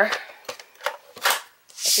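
Cardstock sliding and rubbing against a grooved scoring board as it is moved into position: a few short dry scrapes of paper.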